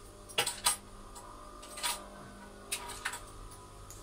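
About five light, sharp metallic clicks and clinks, spaced unevenly, as small metal belt-buckle parts are handled and fitted at a workbench.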